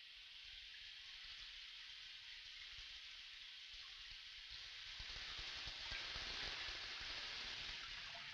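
Shower spray hissing steadily. About five seconds in it grows louder and fuller, with a low rumble of falling water added.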